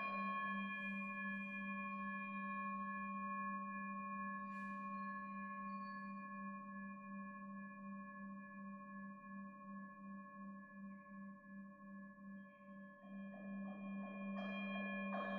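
Hand-held brass singing bowl ringing and slowly fading: a low hum with a wavering beat under several higher overtones. Near the end a fresh mallet strike brings the ring back up.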